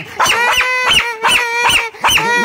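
White Spitz-type dog giving a quick run of high-pitched, whining yelps, about five or six in two seconds, with a held whine between them.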